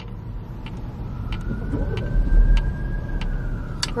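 Road and engine rumble inside a moving car's cabin, loudest about halfway through. A faint drawn-out whine rises slowly and eases off near the end.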